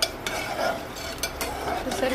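A ladle stirring thin dal in an aluminium pot, with scattered clinks and scrapes against the pot's side.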